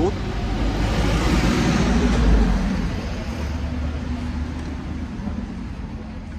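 A road vehicle passing close by on the street: a low rumble with tyre hiss that swells to its loudest about two seconds in, then slowly fades away.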